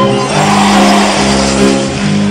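Live band music, sustained chords held steady between sung lines. A noisy swell rises and falls about half a second in.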